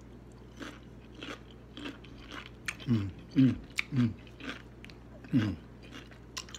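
A person biting and chewing food with frequent short, crisp crunching clicks. From about three seconds in, four loud, short 'mm' hums of enjoyment, each falling in pitch, break in over the chewing.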